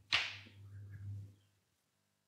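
Chalk on a blackboard: one quick scratchy stroke about a tenth of a second in, followed by a few fainter strokes.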